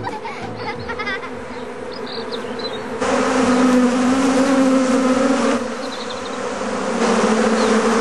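A swarm of honeybees buzzing in a dense, steady drone that gets louder about three seconds in.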